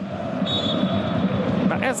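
Football stadium crowd noise, a steady din, with a short high whistle about half a second in.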